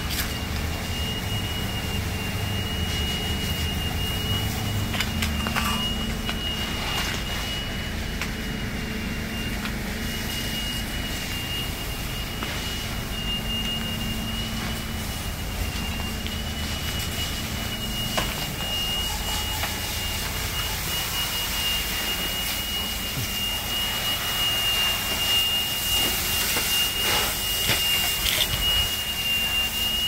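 A steady high-pitched tone held without a break, over a low steady rumble, with a few faint knocks near the end.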